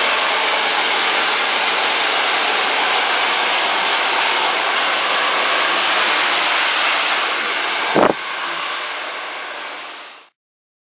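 Hand-held hair dryer with a concentrator nozzle blowing steadily at close range, used to stretch out tight natural curls. A brief knock about eight seconds in, after which the noise is quieter and fades out.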